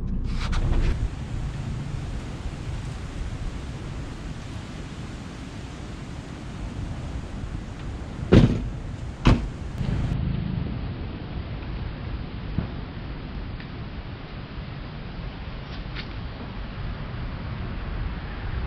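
Steady outdoor background noise, broken about eight seconds in by two sharp thumps under a second apart: an SUV's rear liftgate being pulled down and shut.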